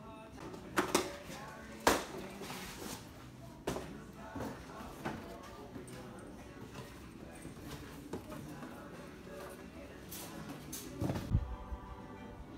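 Shop ambience of indistinct background voices and music. A few sharp knocks or clacks cut through it, the loudest about two seconds in, with another cluster near the end.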